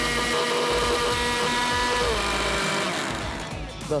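Blendforce 400 W countertop blender running, blending a milkshake: a steady motor whine over a whirring rush. The whine drops in pitch about halfway through, and the sound fades and stops just before the end as the blender is switched off.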